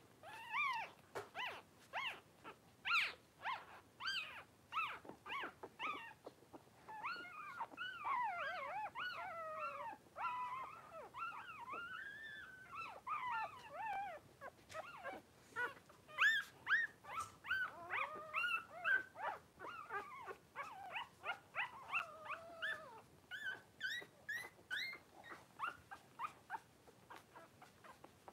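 Cavalier King Charles spaniel puppies play-fighting, making a continuous stream of short high-pitched yips and squeals, with longer wavering, warbling calls in the middle stretch.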